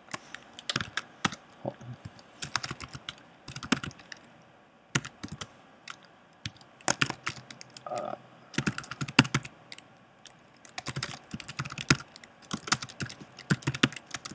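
Typing on a computer keyboard: quick runs of key clicks in bursts, with short pauses between them.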